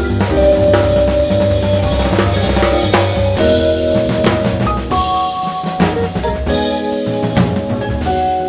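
Modern jazz group recording with a busy drum kit (snare, rim and bass drum) driving under long held melody notes and a walking low bass line.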